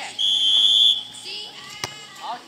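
A single steady whistle blast lasting just under a second, then, near the end, one sharp slap of a hand striking a volleyball.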